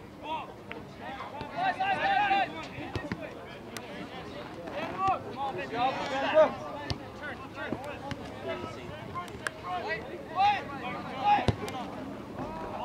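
Several voices shouting across an open soccer field during play, overlapping calls that come a few times: about two seconds in, loudest around six seconds, and again near the end.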